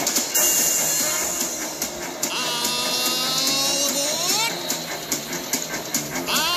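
Steam train whistle blasts that slide up in pitch and then hold, after a burst of steam hiss, heard over music.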